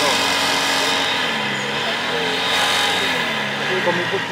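Portable fire pump's petrol engine running steadily, its pitch dipping and rising again between about one and three seconds in.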